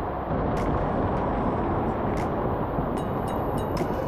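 Steady rush of water from a waterfall pouring into a lazy river, with a few small splashes and drips near the end.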